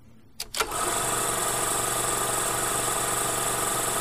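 Outro sound effect: a couple of sharp clicks about half a second in, then a loud, steady, engine-like drone that holds evenly.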